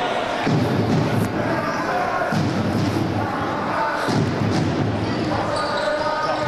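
A basketball being dribbled on a hardwood court in a sports hall, over a steady din of crowd and player voices.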